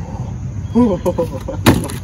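A short, stifled laugh about a second in, over a steady rumble of wind on the microphone, then a sharp burst of noise near the end.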